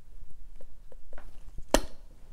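Faint taps and handling noises from a plastic eyeshadow compact and brush, with one sharp click near the end.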